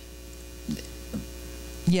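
Steady electrical mains hum through the microphone and sound system, with two faint short sounds about three-quarters of a second and just over a second in.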